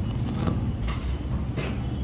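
Steady low rumble of background noise, with three brief, short rustling clicks as a phone circuit board and its wires are handled.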